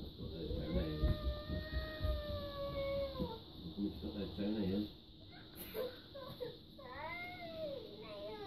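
A young girl's wordless whining cries: one long held cry that drops in pitch at its end, a shorter lower warble, then a rising-and-falling cry near the end.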